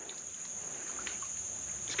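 Insects singing in summer woodland: one steady, unbroken high-pitched drone.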